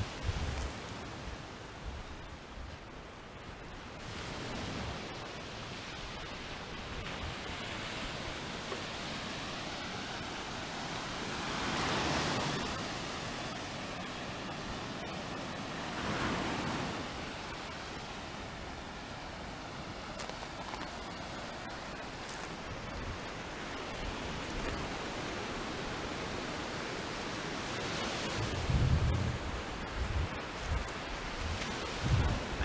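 Ocean surf washing onto a beach: a steady rush that swells louder about twelve seconds in and again about sixteen seconds in. A low buffeting on the microphone comes near the end.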